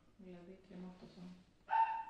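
A dog gives a short, high, steady-pitched whine near the end, after a few soft, low voice sounds.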